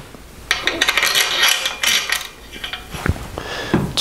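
Steel main-cap bolts clinking and rattling against the main bearing cap of a small-block Chevy as they are set into its bolt holes: a quick run of small metallic clicks lasting about two seconds. A single knock follows near the end.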